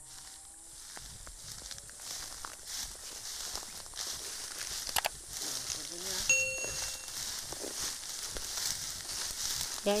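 Resam fern (Dicranopteris) fronds rustling and crunching irregularly as a person wades through and tramples them underfoot. A short electronic chime sounds about six and a half seconds in.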